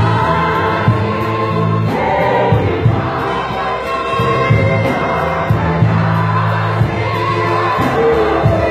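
A gospel choir singing in isiZulu, with many voices together and a band accompanying. Long low bass notes sit under the singing, with a steady beat of light percussion above it.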